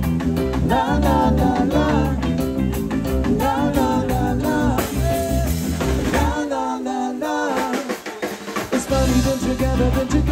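Live ska band playing an instrumental passage on drum kit, bass and electric guitars. About six seconds in, the bass and drums drop out for a couple of seconds, and the full band comes back in near the end.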